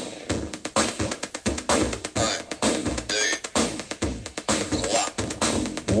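Electronic music with a steady drum beat, played through a boombox's speakers.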